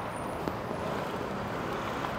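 Steady road traffic noise from a city street, an even background rumble with no distinct passing vehicle.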